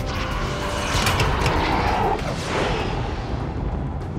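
Nuclear missile flying past with a steady rushing roar, mixed with a dramatic film score.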